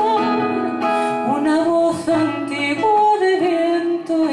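A female singer holding long, slightly wavering notes over acoustic guitar accompaniment, in a slow zamba.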